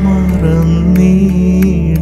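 Music of a Malayalam Christian devotional song: a sustained melody over a steady drone, with a regular beat.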